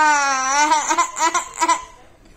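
A young man's distressed vocalising: the tail of a long drawn-out wail whose pitch sags, then about four short, broken, laugh-like bursts that fade out near the end.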